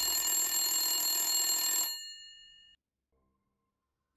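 Old rotary desk telephone bell ringing once for about two seconds for an incoming call, its tones fading away shortly after the ring stops.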